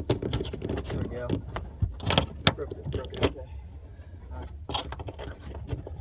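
A steel wire cable being worked through a car's rear-window rubber gasket with a screwdriver: scraping and rubbing with a scatter of sharp metallic clicks and knocks, the loudest about two to three seconds in.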